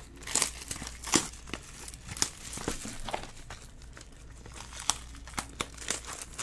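Plastic packaging crinkling and rustling as it is handled, in scattered small crackles and clicks over a faint steady low hum.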